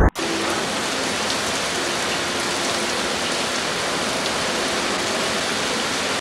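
Heavy rain pouring down on a street, a steady dense hiss that starts suddenly at the very beginning.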